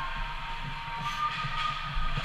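Indoor ice rink ambience: a steady low hum, with faint distant sounds from play at the far end of the ice.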